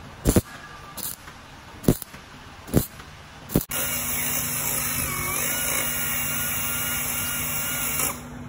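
MIG welder laying short tack welds on a steel rocker panel: a brief crackle a little under once a second. Then a handheld power tool runs steadily with a high whine, its pitch dipping briefly once.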